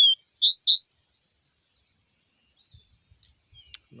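Caged caboclinho (a Sporophila seedeater) calling: a short falling whistle, then two loud quick upslurred whistles within the first second, followed by a few faint notes.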